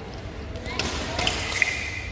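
Fencers' shoes thudding and stamping on the piste as they move in a foil bout, with voices in the hall.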